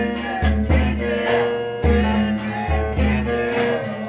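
Live Turkish folk music: a bağlama plucked over an ensemble of darbuka goblet drums and frame drums, with heavy low beats from a large davul drum, and a voice singing.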